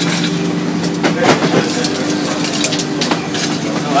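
Ice cubes being scooped and dropped into a glass: a run of sharp, irregular clinks and clatters over a steady low hum.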